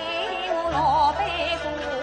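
Yue opera aria: a woman sings a slow, heavily ornamented line with traditional Chinese string accompaniment, the melody wavering with vibrato. A low sustained bass note comes in just under a second in.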